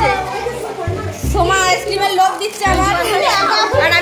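Background music with a repeating bass line, under several people talking, children among them.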